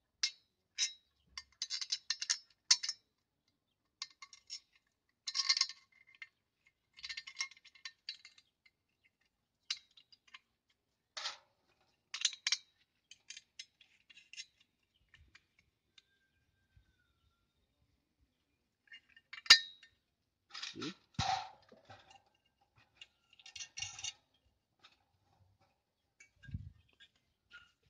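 Small steel parts clinking and clicking as satellite dish mounting brackets, nuts and bolts are handled and fitted together, in short irregular bursts with one sharp clank about three-quarters of the way through.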